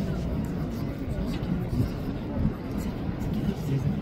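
Indistinct talk of people close by, over a constant low rumble.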